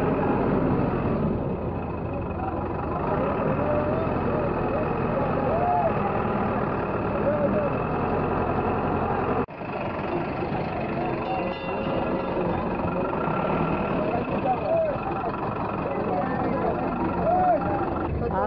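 Several people talking in the background over a steady low rumble. The sound breaks off for an instant about halfway through.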